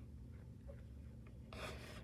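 Low steady hum with faint small ticks, then a brief soft rasping noise about one and a half seconds in.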